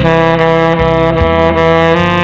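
Tenor saxophone holding one long, full note of a melody over a backing track with a steady beat and a moving bass line.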